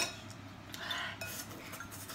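Metal forks stirring and clinking in ceramic bowls of noodles, quiet and scattered, opening with one sharp click and ending with a brief small ring.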